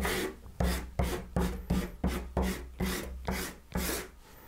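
Soft pastel stick scraping over pastel paper in a run of about ten quick, even strokes, as colour is rubbed in to block in the drawing.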